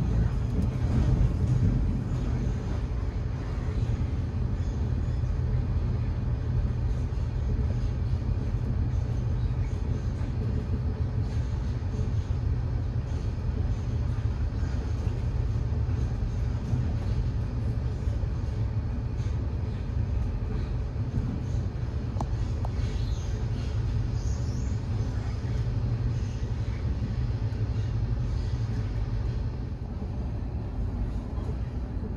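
Steady low rumble of a moving Eurotunnel Shuttle train, heard from inside one of its car-carrying wagons.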